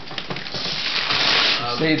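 Wrapping paper and gift packaging rustling and crinkling as a present is unwrapped, with small clicks of handling, growing busier about a second in, then a voice near the end.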